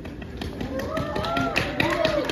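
Several overlapping high-pitched voices of onlookers, with a scatter of sharp taps and clicks. Both start about half a second in.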